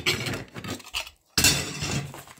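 Die-cast metal model car parts, a roof casting and a chassis frame, clinking and clattering against each other and the tabletop as they are handled. Two bursts of clatter, the second starting a little past halfway.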